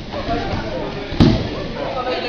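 One heavy thud about a second in: a judoka's body and arms slapping down on the tatami mat as they are thrown. Voices carry in the background.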